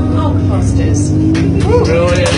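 Bus engine droning low and steady inside the passenger cabin, under the tail of a long sung note; passengers' voices break in near the end.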